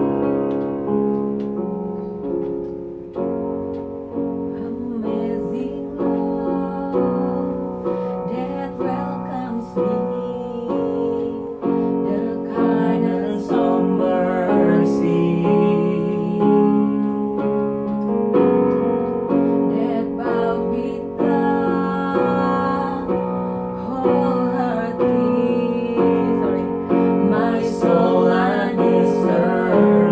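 Portable electronic keyboard playing sustained piano chords, with a woman's voice singing along over it from about the middle on.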